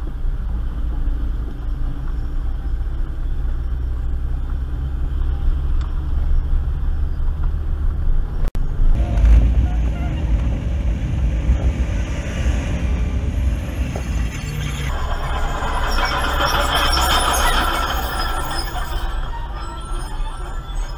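Steady low rumble of a Ford Festiva's engine and its tyres on a gravel surface, heard from inside the car as it crawls up a steep grade towing a trailer. The sound cuts out for an instant about eight and a half seconds in, and a brighter, higher-pitched layer comes in over the last five seconds.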